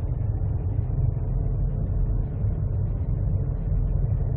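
Steady low road rumble inside a moving car's cabin: engine and tyre noise heard through the body of the car.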